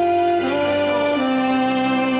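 Alto saxophone playing a slow melody of long held notes, moving to a new note about half a second in and again about a second in.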